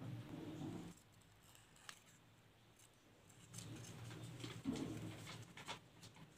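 Scissors snipping through taped paper, a few short sharp snips in the second half, over a low steady hum that comes twice, in the first second and again about four seconds in.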